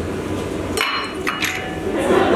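Knocks and clinks from handling a benchtop centrifuge's rotor lid and rotor, with two sharp, ringing strikes a little before and after the middle, over a steady equipment hum.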